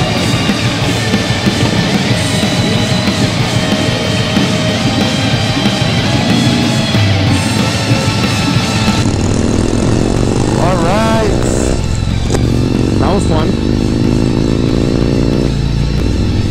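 Loud rock music with heavy guitars. About halfway through, the music thins and a motorcycle engine is heard rising in pitch as it accelerates.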